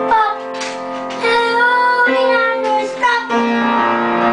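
Piano played with held chords, while a high wordless voice sings gliding notes over it.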